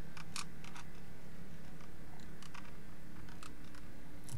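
Scattered light clicks from operating a computer, about nine short ticks spread unevenly over a low steady hum.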